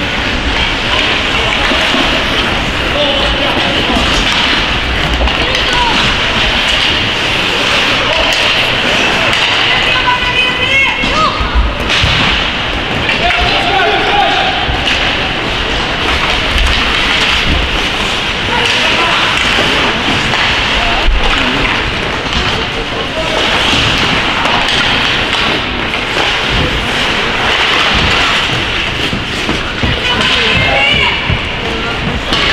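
Ice hockey in play in an indoor rink: skates scraping the ice, sticks and puck knocking with occasional thuds against the boards, over a steady din with scattered shouting voices.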